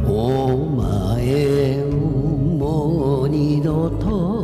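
A man singing a Japanese enka ballad over a karaoke backing track, with a wide vibrato on the held notes.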